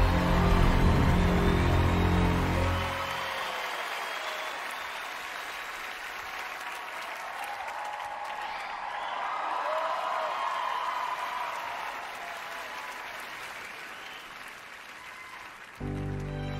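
Music with heavy bass that cuts off about three seconds in, followed by a studio audience applauding and cheering, swelling about halfway and fading toward the end.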